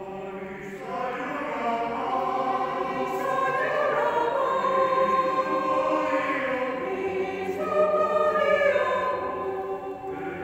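Mixed choir of men's and women's voices singing sustained chords, swelling louder about a second in and easing off near the end.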